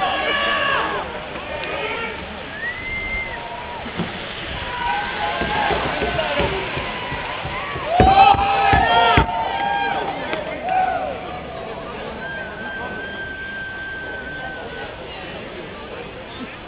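Spectators' voices calling and shouting over one another, unintelligibly, with the loudest burst of shouts about eight seconds in and one long held call near the end.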